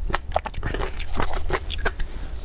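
Close-miked gulps and swallows of someone drinking from a paper cup: a quick, irregular run of short mouth clicks over a low steady hum.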